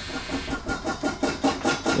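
Small rubber eraser shaped like a drink cup rubbed rapidly back and forth over pencil lines on a sheet of paper, about five or six scrubbing strokes a second.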